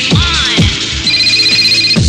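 Electronic dance music from a DJ mix, with a kick drum beating about twice a second. About halfway through, the kick drops out and a high, rapidly pulsing electronic tone plays until the beat comes back at the end.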